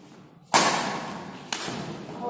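Two badminton racket strikes on a shuttlecock about a second apart, the first the louder, each ringing on in the echo of a large hall.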